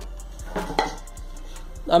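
Thin virola plywood board picked up off a tiled floor, making a few light knocks and scrapes.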